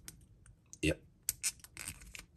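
A few small, sharp clicks and scrapes of hard plastic as a rigid action-figure hand is worked onto a painted plastic gun, most of them in the second half. A short spoken 'yep' comes a little under a second in.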